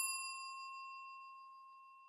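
A single bell-like chime sound effect, struck just before and ringing out, fading away over about two seconds: a subscribe-confirmation ding.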